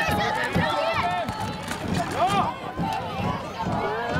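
Several high-pitched voices shouting and calling out over one another, as from spectators and players at a football match, with an uneven low noise underneath.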